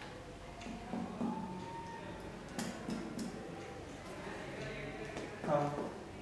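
Finger-on-finger percussion of a man's abdomen: a few soft, irregularly spaced taps, meant to bring out the hollow tympanic note that is normal over the abdomen.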